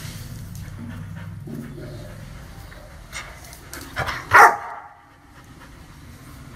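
A dog barks once, loudly and sharply, about four seconds in, after a couple of softer short sounds just before.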